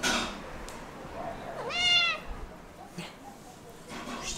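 A domestic cat meows once, about halfway through: a single call under a second long that rises in pitch and then holds. A short burst of noise comes right at the start.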